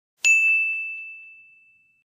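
A notification-bell 'ding' sound effect. One clear, high bell strike about a quarter of a second in, ringing out and fading away over about a second and a half.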